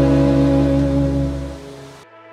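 Background pop song between sung lines: a held chord that fades away near the end.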